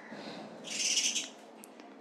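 A single short, harsh bird call lasting about half a second, around a second in, over a faint steady background hiss.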